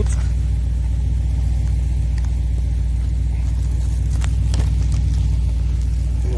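A steady low rumble like a car engine idling, with a couple of light clicks from cardboard and plastic packaging being handled about four seconds in.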